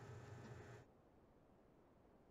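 Near silence: faint room tone that drops away about a second in.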